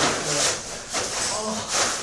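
Plastic tarp floor covering rustling and scuffing under bare feet and shoes as several people shift and walk on it, in a few uneven bursts.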